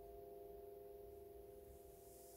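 Faint, steady ringing drone of a few held pitches, with a slow pulsing beat in the lowest one and no decay.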